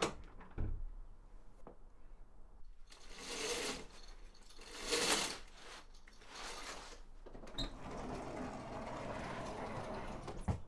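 A lever door handle is turned, its latch clicking, with a soft knock as the door moves. Three swells of rustling follow, the loudest in the middle of the clip. Near the end comes a steady rolling as a sliding glass patio door runs along its track.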